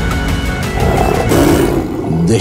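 A tiger roaring once, starting about two-thirds of a second in and lasting about a second, over background music.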